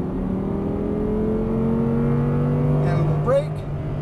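Audi R8's V10 engine accelerating hard under full throttle, heard from inside the cabin, its pitch rising steadily as the car gathers speed out of a corner.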